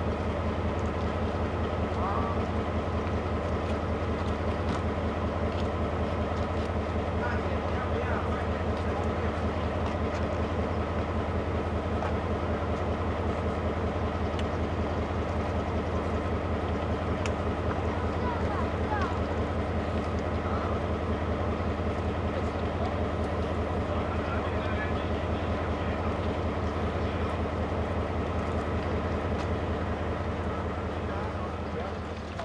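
Taiwan Railways diesel-electric locomotive standing with its engine idling: a steady, even low hum that does not change. Faint voices of people nearby are heard over it.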